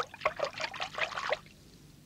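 Water splashing in a bucket as a hand dunks into it. It is a quick run of small splashes that stops about one and a half seconds in.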